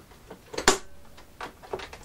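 A few sharp mechanical clicks from a domestic sewing machine being worked by hand at its hand wheel and presser foot, the loudest about two-thirds of a second in.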